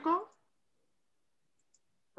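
A woman's voice trailing off at the end of a word, then dead silence broken only by one faint click near the end.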